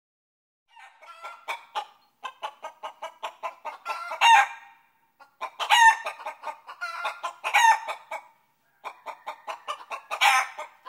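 Chicken clucking in quick runs, rising several times to a louder drawn-out squawk, a sound effect laid over the footage with no road noise beneath it.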